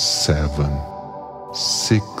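Ambient music: a steady sustained drone of held tones, with a calm voice speaking single syllables over it, about at the start and again near the end.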